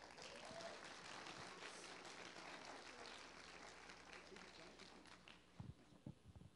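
Congregation applauding: faint clapping from many hands that starts abruptly and thins out near the end, with a couple of low thumps.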